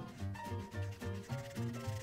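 Felt-tip Prismacolor marker rubbing back and forth on paper as it colors in a shape, over background music with a steady beat.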